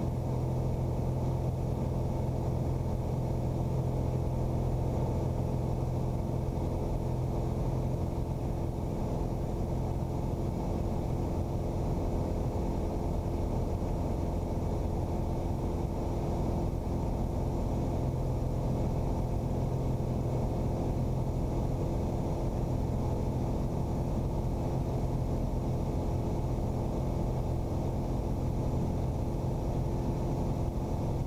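Single-engine piston airplane's engine and propeller running steadily in cruise, a muffled drone with a low hum that dips a little for a few seconds mid-way.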